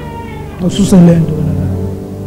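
Soft, steady keyboard music under a man's loud, drawn-out cry that starts about half a second in, with its pitch sliding down and then holding for about a second.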